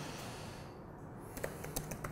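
Laptop keyboard keystrokes: a quick run of a few key presses in the second half, after a quiet first second of room noise.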